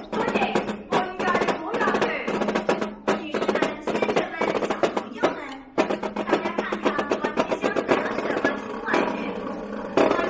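Three snare drums played together in a marching drum cadence with drum rolls, breaking off briefly a little after halfway.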